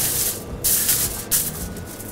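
A sheet of aluminium foil crinkling and rustling as gloved hands spread and smooth it flat, in a few bursts.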